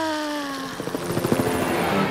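A long falling voiced sigh that ends about a third of the way in, then the rapid chopping of a cartoon helicopter's rotor sound effect.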